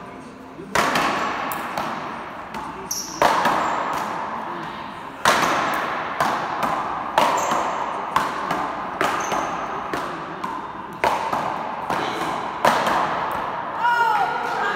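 Paddleball rally: sharp, loud cracks of paddles hitting the ball and the ball striking the front wall, about every two seconds, seven in all, each ringing out in the echoing court hall.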